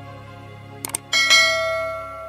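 Subscribe-button animation sound effect: a quick double mouse click about a second in, then a bell chime that rings and slowly fades, over soft background music.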